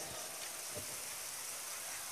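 Low, steady background hiss with no voice.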